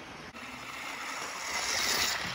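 Model train speeding past close by: a rushing noise that swells toward the end and then fades.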